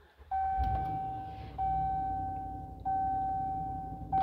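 Ram 2500 dashboard warning chime sounding after the push-button ignition is pressed: a steady electronic tone about a second long, repeated three times and fading slightly each time, over a low hum.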